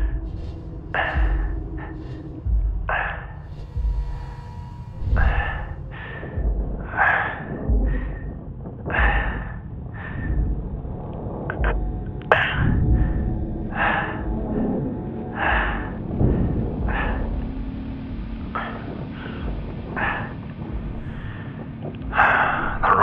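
An astronaut's breathing inside a spacesuit helmet, a breath every one and a half to two seconds, over a low steady hum. A single sharp click comes about twelve seconds in.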